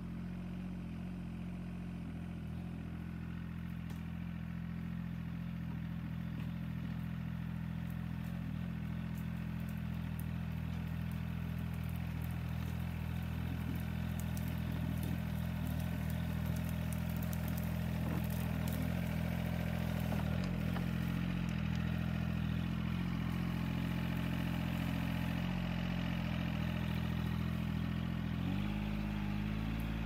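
Kubota L2501 compact tractor's three-cylinder diesel engine running steadily, getting gradually louder as the tractor drives closer. Near the end the engine note changes and drops in pitch.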